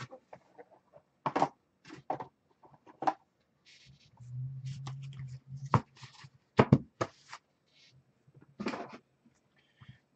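A stack of trading cards being handled: scattered sharp taps, flicks and riffles of card stock against the table. About four seconds in comes a short hummed note with a closed mouth.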